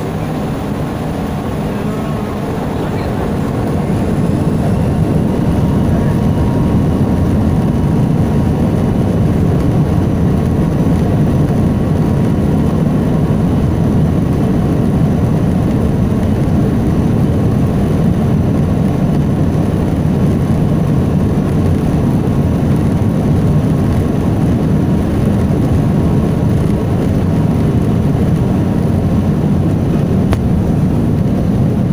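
Jet airliner engines heard from inside the cabin, rising to takeoff thrust about three seconds in, then a steady, loud low noise through the takeoff roll down the runway.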